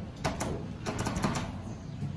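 Fujitec elevator car-call push button pressed repeatedly, making a quick run of small clicks; pressing it a few times cancels the registered floor call.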